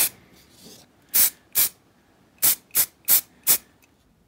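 Spray primer hissing in about seven short bursts, the first two a little under half a second apart and the rest coming faster near the end, as a base coat of dark brown primer goes onto a miniature.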